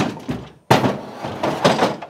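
A sudden crash about two-thirds of a second in, clattering on for about a second: an offscreen collision with a parking meter.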